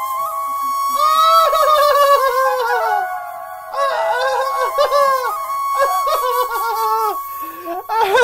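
Flute-like melody in two wavering, bending phrases, a few seconds each, over steady held tones.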